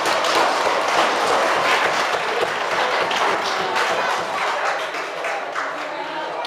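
Audience applause, many hands clapping, with voices mixed in, easing off near the end.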